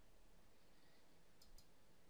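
Two faint clicks of a laptop touchpad button, a split second apart, about one and a half seconds in, against near silence.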